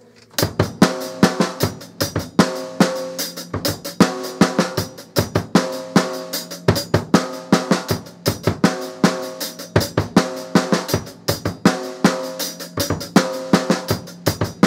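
Drum kit played in a practice exercise: a continuous run of snare drum strokes and bass drum kicks, starting about half a second in. In the pattern, the bass drum comes back in right after two snare strokes.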